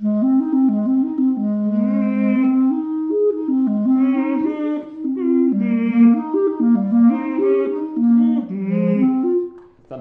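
Clarinet played in its low register: a continuous flowing phrase of many notes that stops shortly before the end. It demonstrates the player's technique of singing into the instrument while playing, with the voice reacting as air is blown out from the cheeks during circular breathing.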